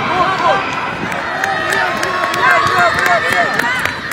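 Several spectators' voices shouting and calling out over one another in short, rising-and-falling cries, as at a children's roller-skating race.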